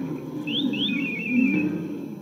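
Cartoon animal sound effects: a low rumbling growl throughout, with two quick rising whistles and a short warbling chirp about half a second in, fading away near the end.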